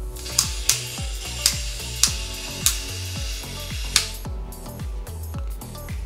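Background music with a steady beat. Over it in the first four seconds come about six sharp, irregularly spaced plastic clicks as the hinged missile-pod covers on the side of a plastic mecha figure are slid forward and snap open.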